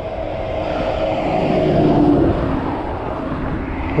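A truck passing on the road. Its engine and tyre noise swells to a peak about halfway through and drops in pitch as it goes by, over steady wind rumble on the bike-mounted microphone.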